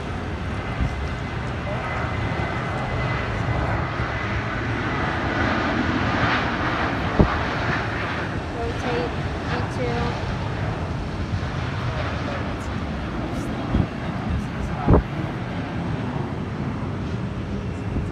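Jet engine noise from a distant Southwest Airlines Boeing 737 taking off, at takeoff thrust: a broad steady rumble with a faint whine, growing to its loudest about six to seven seconds in. Sharp knocks are heard about seven and fifteen seconds in.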